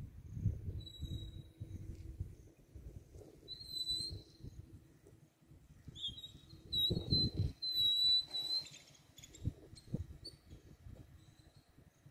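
A bird giving high, steady whistled notes in three spells, the last and longest about six seconds in. Underneath is an irregular low rumble of wind buffeting the microphone, loudest around seven seconds in.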